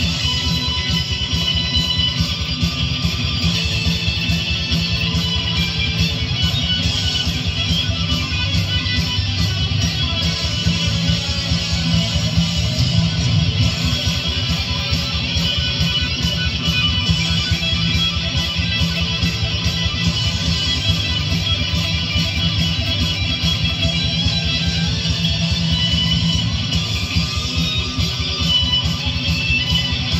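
Gibson Les Paul Tribute electric guitar played through a Boss GT-100 multi-effects unit with a heavy metal distortion tone, soloing continuously over a loud backing track.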